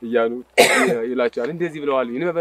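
A man speaking, with a brief loud rasp like a throat clearing or cough breaking in about half a second in.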